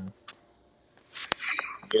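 A short pause in conversation, then a breathy inhale with a single sharp mouth click as a man draws breath just before speaking.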